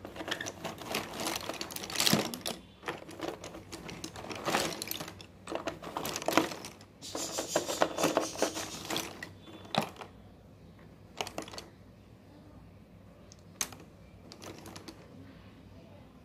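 Slate pencils clicking and clattering against one another as a hand rummages through a heap of them, busy for about the first ten seconds, then thinning to a few separate clicks.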